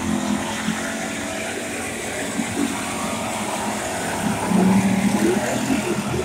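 Hobby stock race cars' engines running as they race around a dirt oval, a steady blend of engine noise that grows louder about four seconds in as cars come past.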